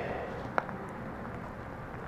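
Steady low background noise with no distinct source, and one faint click about half a second in.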